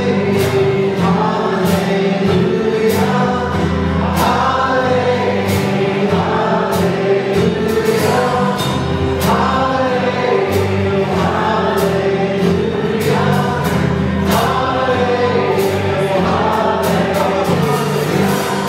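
A live church worship band playing a song: acoustic guitars, electric bass and a drum kit, with several voices singing together over a steady beat.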